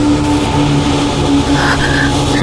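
Drama background score of sustained low held notes over a steady rushing noise of a car on the road.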